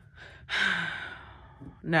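A woman sighing: one long breath out about half a second in that fades over about a second, with a faint falling hum of voice under it.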